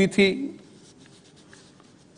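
A man speaking Hindi into a microphone finishes a word in the first half second. A pause follows, with quiet room tone and a few faint ticks.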